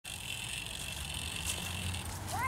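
Outdoor park ambience: a steady high-pitched hiss over a low rumble, with a faint click about one and a half seconds in.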